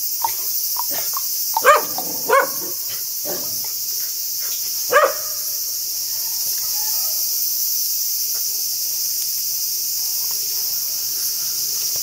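A dog in a wire kennel cage barking in short single barks, several in the first five seconds, the loudest about two, two and a half and five seconds in, then stopping. A steady high insect buzz runs underneath throughout.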